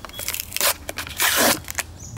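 Clear plastic blister pack of a carded die-cast toy car being ripped open from its cardboard backing: a run of sharp clicks and tearing plastic, loudest a little past the middle.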